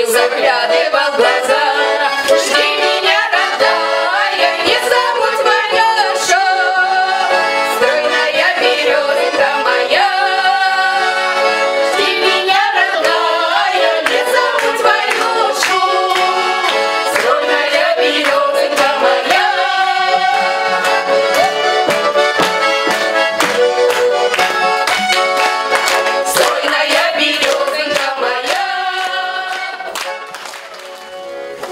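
Button accordion playing a folk tune with a trio of women's voices singing along; the music dies down near the end.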